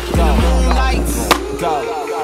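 Hip hop music with a deep bass line, over the scrape of inline skates grinding a metal handrail, with one sharp clack a little over a second in.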